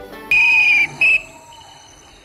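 A whistle blown twice: a high-pitched blast of about half a second, then a short second blast.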